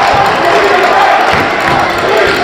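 Loud crowd of spectators in a basketball gym shouting and cheering, a steady wall of voices, with a few low thuds about a second and a half in.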